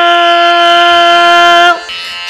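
A woman's singing voice holding one long, steady note at the end of a phrase of a Carnatic bhajan, breaking off near the end.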